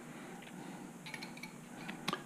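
A few faint clicks and clinks of metal fork parts handled by hand, mostly about a second in: a slider bushing being spread and eased off the top of a motorcycle fork cartridge tube.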